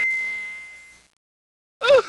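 A single bell-like ding, struck once and ringing out over about a second. Near the end a short call with a bending pitch begins.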